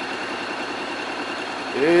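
Honda X-ADV's parallel-twin engine idling steadily while the bike stands still.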